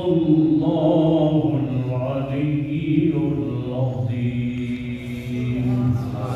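A man's voice chanting a religious recitation through a microphone, slow and melodic, with long held notes that slide gradually in pitch.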